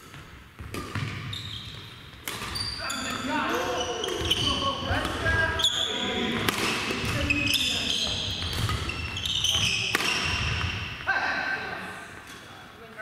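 Badminton play on a wooden gym court: repeated sharp racket hits on shuttlecocks, shoes squeaking on the floor and players' voices calling out.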